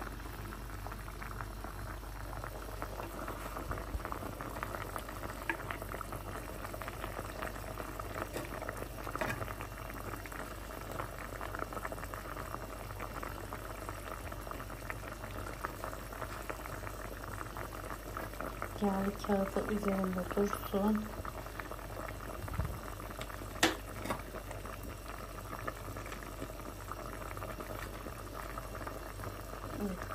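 Stew bubbling steadily in an earthenware güveç pot under a baking-paper cover, a dense fine crackle of simmering: the dish is still cooking and not yet done.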